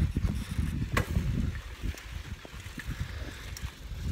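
Wind buffeting a phone microphone in an uneven low rumble while cycling, with a sharp click about a second in.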